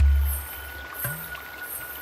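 A deep low boom that fades within about half a second, then the steady rushing of an underground river in a cave.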